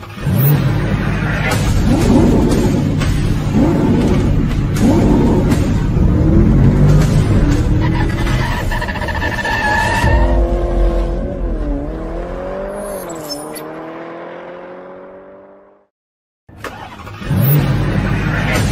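Car engine revving and accelerating over music, with repeated rising sweeps in revs. It then settles into a single engine note that dips, climbs and rises steadily before fading out two seconds before the end. After a brief silence the revving starts again.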